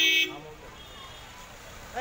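A vehicle horn honking, the blast cutting off about a quarter second in, followed by street noise with crowd voices in the background.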